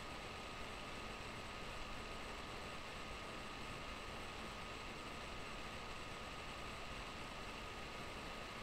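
Steady background hiss with a faint thin whine, the noise floor of a webcam microphone in a quiet room.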